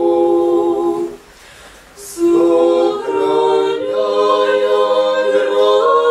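Small mixed a cappella ensemble of men's and women's voices singing Russian Orthodox church chant in sustained chords. About a second in, the voices break off for a second with a short hiss, then come back in together.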